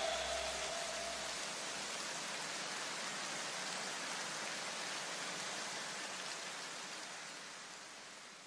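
A steady, even hiss of noise that slowly fades away, with the last note of the background music dying out in the first second or so.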